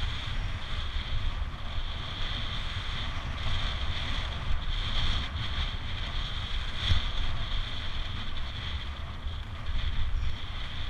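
Wind rushing over the microphone of a camera on a road bicycle at speed: a continuous low buffeting rumble under a steady high hiss.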